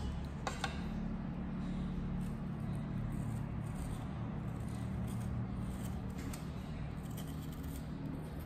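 A small kitchen knife scraping and cutting the skin off a round fruit in short strokes, over a steady low hum. About half a second in, a plate clicks twice as it is set down on the stone counter.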